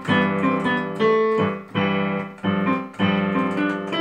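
Yamaha digital piano played with both hands at tempo: a chord accompaniment of repeated chords, struck afresh about every half to three-quarters of a second, the notes ringing on between strokes.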